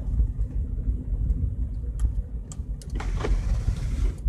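Steady low rumble inside the cabin of a Seat Mii being driven, engine and road noise together, with a couple of faint clicks midway.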